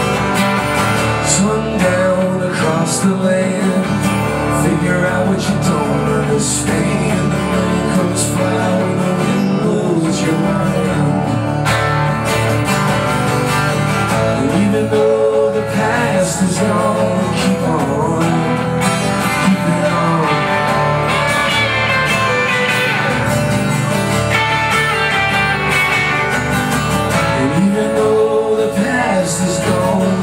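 Live instrumental passage of a folk-rock song, with an acoustic guitar strummed alongside an electric guitar played through an amp.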